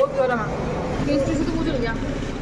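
A woman's voice talking over a steady background hum of street traffic.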